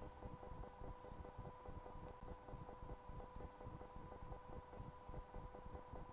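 Near silence: faint room tone with a steady, even hum.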